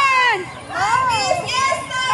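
High-pitched voices, children's by their pitch, calling out in several short rising-and-falling shouts, with a crowd around them.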